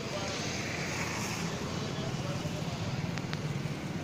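Steady street traffic rumble with faint voices in the background, and two small clicks about three seconds in.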